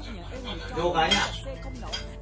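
Bowls, plates and cutlery clinking during a shared meal on the floor, a few short clinks, with voices talking in the room.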